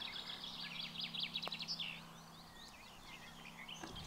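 Birds chirping and singing in the background, busiest in the first couple of seconds, over a faint steady low hum.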